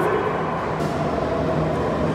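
Jakarta MRT train pulling into the underground station behind glass platform screen doors, a steady rumble of running noise. A steady tone joins it a little under a second in.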